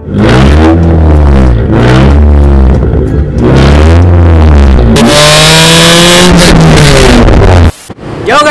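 Car engine revved hard through a makeshift exhaust extension of garden hose and bamboo: about four quick rises and falls in revs, then a longer high rev held for about two and a half seconds that cuts off abruptly near the end.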